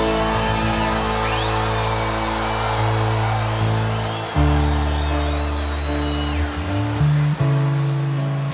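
Live band playing an instrumental passage with drums: sustained bass notes and chords hold, then shift to a new chord about four seconds in and again near the end, with cymbal strokes in the second half.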